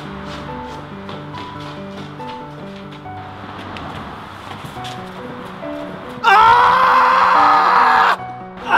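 Background music of soft held notes. About six seconds in, a person lets out a loud scream held for nearly two seconds, which stops abruptly.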